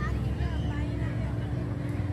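Outdoor crowd ambience: many people talking at once, none clearly in front, over a steady low rumble.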